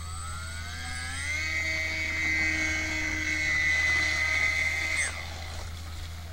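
Small RC model seaplane's electric motor and propeller throttled up: a whine that rises in pitch over the first second and a half, holds steady at full power as the model runs across the water, then stops abruptly about five seconds in.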